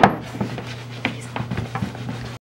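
Handling and wiping a leather boot with a towel on a wooden tabletop: a sharp click right at the start, then scattered light knocks and rubbing, over a steady low hum.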